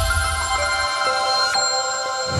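TV news channel's animated-logo jingle: a sustained, bright electronic chime chord over a deep low rumble that fades out about a second in. Its notes shift slightly around halfway through.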